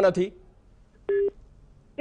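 A single short telephone beep on a live phone line, about a second in, lasting about a fifth of a second.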